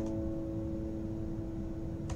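The final strummed acoustic guitar chord ringing out and slowly fading at the end of the song.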